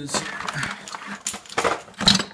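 Metal hand tools being rummaged through, a run of irregular clinks and knocks.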